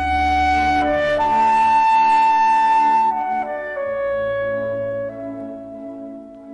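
Recorded orchestral classical music: a slow melody of long held notes on a wind instrument over sustained chords, its highest note held for about two seconds before the line steps down.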